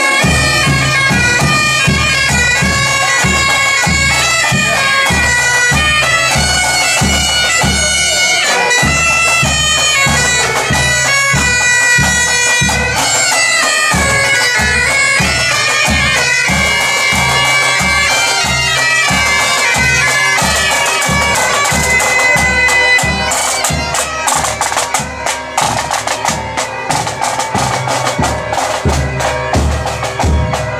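A marching pipe band: bagpipes playing a tune over their steady drones, with a regular bass-drum beat underneath. Near the end the pipes fall back and the drums carry on.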